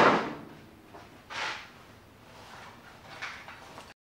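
Pine 2x2 boards knocking against each other and the steel table saw top as a piece is lifted from the stack: one sharp, loud wooden knock, then softer knocks and scrapes about a second and a half and three seconds in. The sound cuts off abruptly near the end.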